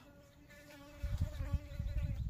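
A flying insect buzzing close by with a steady hum. From about a second in, a low rustling joins it as gloved hands work through the grass.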